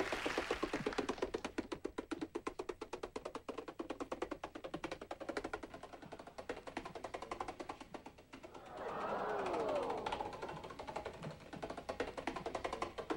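A long chain of dominoes toppling, a rapid, even clatter of many small clicks a second, with background music over it.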